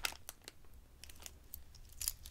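A few faint, sharp clicks of acrylic beads knocking together as a beaded strand is turned over in the hands.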